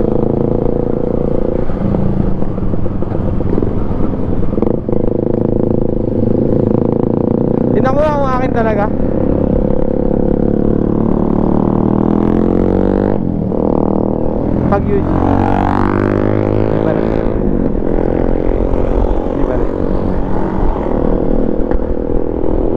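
Motorcycle engines running on the move, with road and wind noise. The engine note climbs steadily as the bikes accelerate, from about ten to fourteen seconds in.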